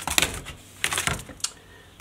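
Plastic clicks and clatter from a Dell Inspiron Mini 10 netbook's keyboard and case being handled and prised apart: a quick cluster of sharp clicks at the start, another about a second in, and a single click shortly after.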